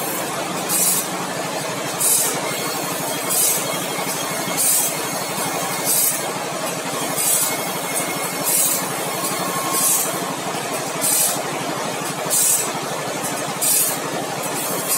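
Automatic band saw blade sharpener running with a steady motor hum. A short high-pitched grinding hiss comes about every 1.3 seconds as the grinding wheel dresses one tooth after another while the blade is fed along.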